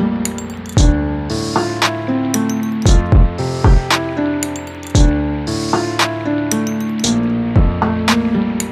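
Instrumental ambient trap-style hip-hop beat at 115 BPM in D minor. Sustained synth chords play over 808 bass kicks that slide down in pitch, with fast hi-hat rolls and a snare about every two seconds.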